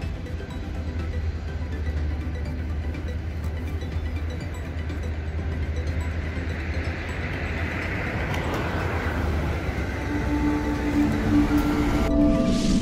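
Steady low rumble of outdoor traffic, with a passing vehicle swelling and fading around the middle. Music with clear held notes comes in near the end.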